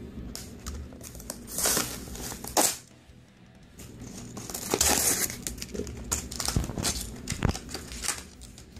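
A cardboard toy box being opened and the plastic bags of parts inside crinkling. It comes in bursts: a sharp tear about two and a half seconds in, more crinkling around five seconds, then a few light knocks near the end.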